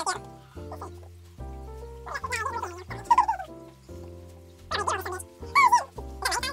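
Background music with steady held notes, over which men giggle twice: a few seconds in and again near the end.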